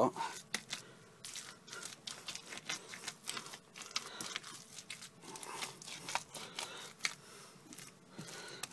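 A spoon stirring and scraping through thick, stiff corn mash in a metal pot, a run of irregular scraping clicks. The mash is still stiff, with freshly added barley malt only starting to thin it.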